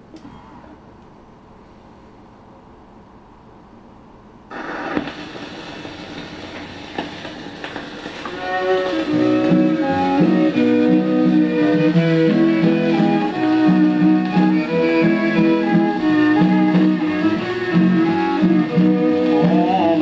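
A 1926 Romeo 78 rpm shellac record playing on a Califone record player. After a few seconds of low hiss, the disc's surface noise starts abruptly about four and a half seconds in as the needle meets the groove. From about eight seconds a violin and guitar introduction plays over the crackle.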